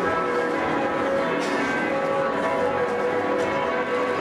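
Church bells ringing, several bells overlapping in a steady, continuous peal.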